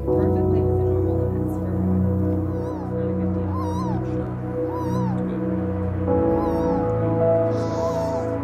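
Newborn baby crying in short, wavering wails that repeat about once a second, over soft ambient music with steady held notes.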